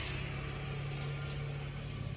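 Steady low engine hum over a background of road noise.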